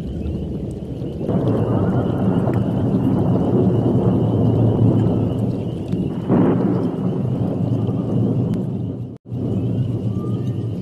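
A loud, dense rumbling sound effect that swells about a second in and surges again around six seconds in, then cuts out briefly near the end.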